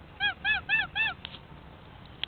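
White domestic goose honking four times in quick succession, each honk a short call that rises and falls in pitch.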